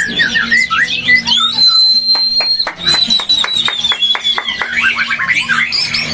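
White-rumped shama (murai batu) singing in a cage: quick whistled phrases sliding up and down, a long held high whistle about two seconds in, then a fast run of falling notes.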